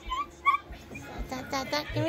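Toddler's small high-pitched vocal squeaks, two short chirps in the first half second, then softer grunting sounds as he climbs.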